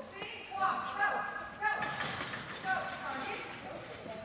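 Indistinct voices of people talking in a large indoor hall, with a sharp knock a little before the middle.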